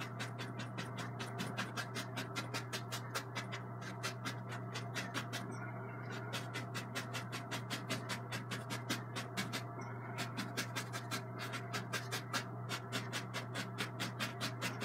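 Bristle brush tapping and dabbing thick oil paint onto a canvas wet with liquid clear, in quick even strokes about five a second, over a steady low hum.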